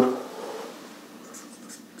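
Marker pen writing on a whiteboard: faint, brief scratches and squeaks of the felt tip on the board.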